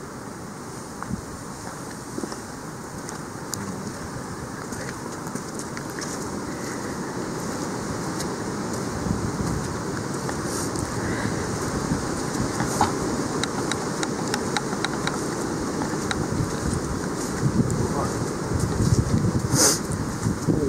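Footsteps on a towpath with wind buffeting the microphone, a low rumbling noise that grows louder as the walking gets under way, and scattered sharp ticks, more of them in the second half.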